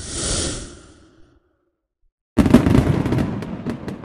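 Cartoon sound effects: a whoosh that swells and fades within the first second, then, after a short silence, a sudden loud crackling burst that runs about two seconds.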